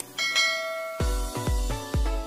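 A click, then a bright bell-like notification chime that rings for just under a second, the sound effect of a subscribe-button bell being pressed. About halfway through, electronic dance music comes in with a deep bass kick about three times a second.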